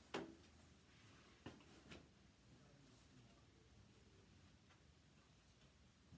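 Near silence: quiet room tone with a few light knocks or clicks, the sharpest right at the start and two more about one and a half to two seconds in.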